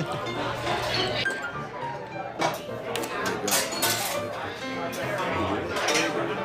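Background music over busy bar chatter, with glassware clinking several times in the middle.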